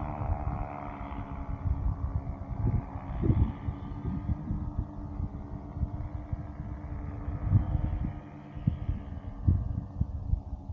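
Small paramotor engine running at a steady low hum, under gusts of wind buffeting the microphone.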